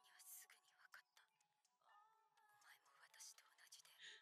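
Near silence, with faint breathy, whisper-like sounds now and then.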